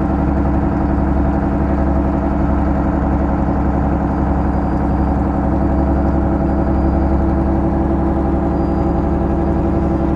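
Engine of a wooden passenger boat running steadily under way, an even mechanical note that holds without change.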